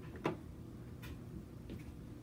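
A short sharp click about a quarter second in, then two fainter ticks, over a steady low hum.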